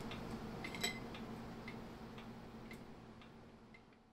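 Faint regular ticking, about two ticks a second, over a low steady hum, fading out near the end.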